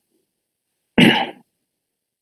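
A person briefly clearing their throat once, about a second in, with silence around it.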